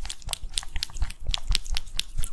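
A cat licking a lickable squeeze-tube treat held close to a microphone: quick, wet licking clicks, about five a second.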